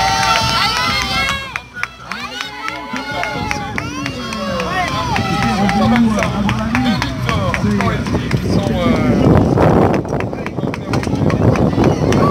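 Indistinct voices over the rolling noise of a bunched pack of mountain bikes on a muddy start, with a louder rush of noise from about nine to eleven seconds in.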